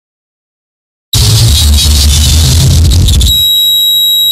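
A loud burst of noise with a deep rumble starts about a second in and gives way after about two seconds to a steady, high-pitched beep.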